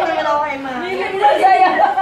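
Several people's voices, mostly women's, talking and exclaiming over one another in an excited, overlapping chatter.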